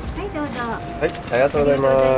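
Speech only: short spoken replies, ending in one long drawn-out word.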